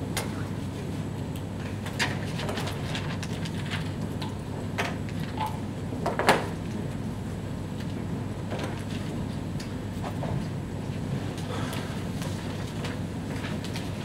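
Rummaging in a bag for a new whiteboard marker: scattered light clicks and rustles of the bag and markers being handled, the sharpest click about six seconds in, over a steady low room hum.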